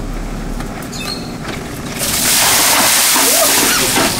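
Ice water dumped from a cooler onto a seated man, a loud steady splashing rush that starts about two seconds in.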